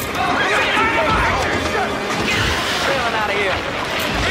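Cartoon character voices yelling and exclaiming without clear words over background music, with two dull low thuds, about a second and about two and a half seconds in.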